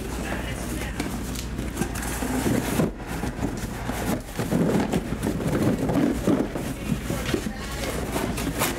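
Cardboard hobby boxes being handled and slid against one another as they are stacked, a continuous scraping and rustling of cardboard with low speech underneath.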